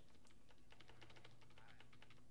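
Faint, rapid clicking of computer keyboard keys, a quick run of many taps over about a second and a half.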